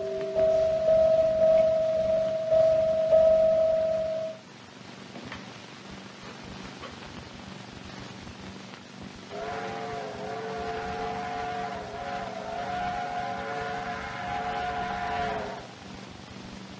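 A held music note ends about four seconds in. After a quiet stretch, a steam locomotive's chime whistle blows one long chord of several notes, slightly wavering, for about six seconds.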